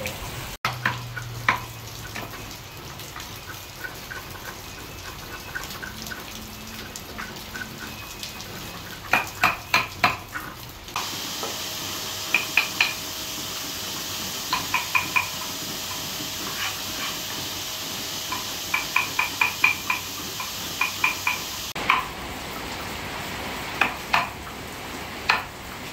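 Wood carvers' chisels being driven into a relief panel with a wooden mallet: sharp, slightly ringing wooden knocks in quick runs of four to six strokes, with pauses between runs.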